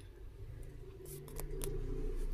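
Faint dabbing and rubbing of fingertips spreading gritty walnut face scrub over the skin, with a few soft clicks a little past halfway, over a low steady hum.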